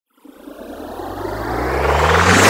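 Logo-intro sound effect: a low drone under a swelling rush of noise that grows steadily louder, building toward the logo's reveal.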